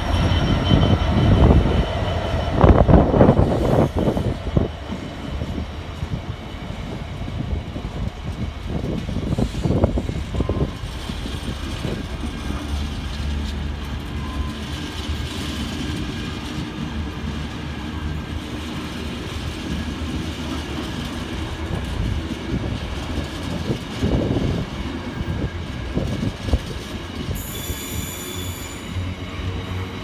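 Freight train of container flat wagons passing behind a Class 66 diesel locomotive. The loco's EMD two-stroke diesel is loud as it goes by at the start, then gives way to a steady rumble and knocking of wagon wheels on the rails, with a brief high squeal near the end.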